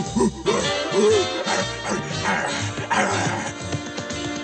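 Jazzy cartoon score playing, with several short animal-like vocal calls that arch up and down in pitch in the first second and a half.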